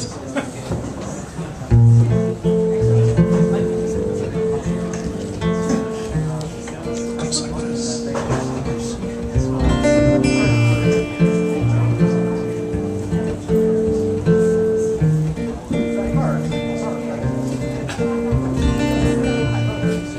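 Solo acoustic guitar playing a song's instrumental intro, strummed and picked notes changing in a steady rhythm, starting about two seconds in.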